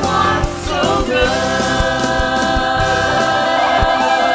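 Christian worship song: women singing with a band behind them and a steady drum beat. A long sung note is held from about a second in.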